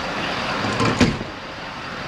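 Steady outdoor street noise, with one sharp knock about a second in.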